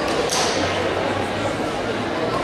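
Indistinct chatter of many spectators, echoing in a large sports hall, with a brief high-pitched sound about a third of a second in.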